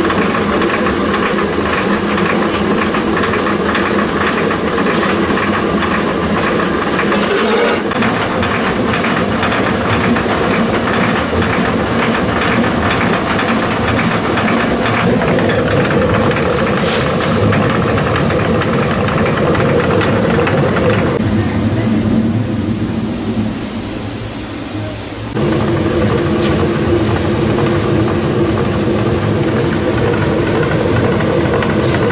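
Water-driven millstone running and grinding grain: a loud, steady mechanical clatter with a fast rattle in it. It dips quieter for a few seconds a little past the middle.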